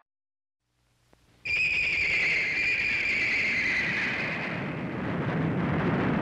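A brief silence, then, about one and a half seconds in, a shrill whistle-like tone starts suddenly and slides slowly down in pitch as it fades over about three seconds, over a steady rushing noise.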